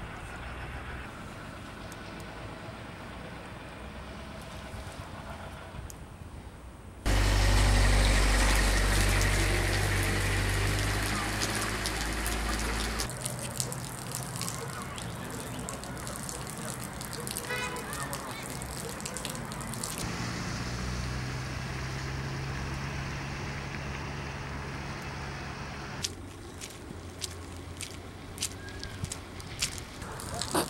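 Outdoor ambience of a snowy town, changing in blocks as the shots change: a steady low hum, then a loud low rumble with wide noise for about six seconds, then quieter hum with faint indistinct voices, and scattered clicks near the end.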